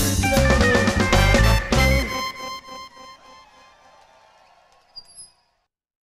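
Live reggae band with drum kit and bass playing its last bars, stopping together about two seconds in. Held guitar and keyboard tones then ring out and fade, and a small click comes just before the sound cuts off near the end.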